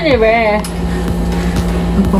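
A woman's voice speaking briefly at the start, over a steady low hum that carries on after the voice stops.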